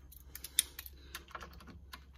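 Faint, irregular small clicks and taps of a metal torque driver's shaft and bit being handled and fitted onto scope-ring screws, with one sharper click about half a second in.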